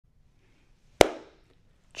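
A single sharp hand clap about a second in, with a brief echo of the room fading after it.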